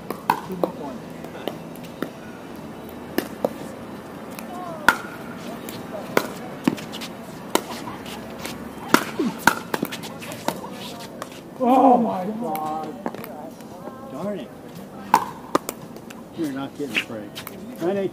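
Pickleball rally: sharp pocks of paddles striking the plastic ball and the ball bouncing on the hard court, coming at irregular intervals about once a second. A player's voice calls out loudly about twelve seconds in.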